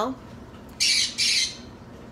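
A pet parrot squawking twice in quick succession, about a second in.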